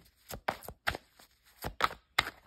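A deck of reading cards being shuffled by hand: a quick, uneven run of crisp slaps and flicks, about five in two seconds, as cards are dropped onto the pack.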